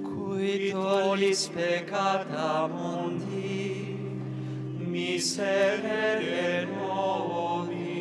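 A slow liturgical chant sung by a voice with vibrato in two phrases, with a pause between them, over sustained organ chords that shift every couple of seconds.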